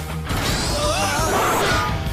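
Action-scene background music with fight sound effects: punches and crashing hits, and a high rising sweep through the middle.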